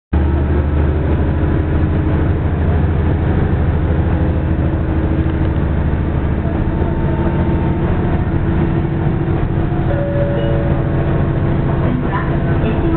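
Diesel railcar engine running steadily with a low, even hum and rumble while the train is under way, heard from inside the passenger car.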